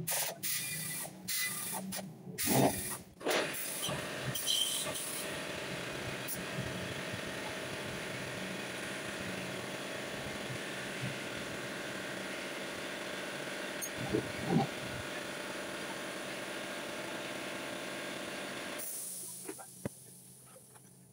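A pneumatic air tool on a shop air hose, worked on the underside of a car on a lift. It gives a few short stop-start runs over the first five seconds, then runs steadily for about fourteen seconds and cuts off shortly before the end.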